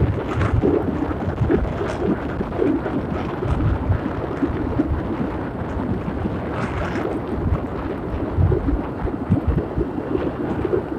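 Wind buffeting the microphone of a moving motorcycle, over engine and road noise: a continuous low rumble that surges in uneven gusts.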